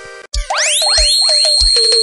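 Forró pisadinha keyboard music at a change of track. The held chord of one song cuts off a quarter second in. The next opens with repeated rising synth sweeps that settle into a high held tone, over a kick drum about twice a second.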